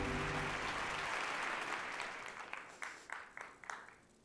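Audience applause in a hall, dying away and thinning to a handful of separate claps near the end, with the tail of electronic intro music fading out in the first second.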